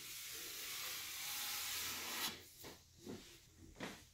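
A hand rubbing across a varnished butcher-block wooden countertop, a soft steady hiss that fades out after about two seconds, followed by a few faint small sounds.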